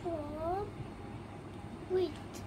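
A cat meows once, a short call that dips and then rises in pitch.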